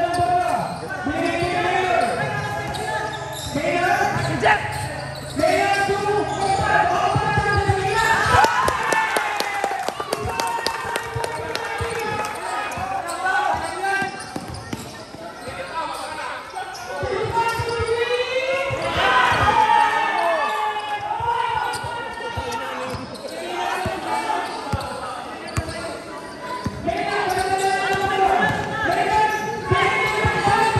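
A basketball bouncing repeatedly on a hard court floor during play, with players' voices calling out over it.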